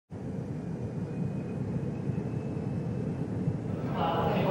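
A steady low rumble of background noise starts just after the beginning and holds without a break, with a faint thin high tone above it.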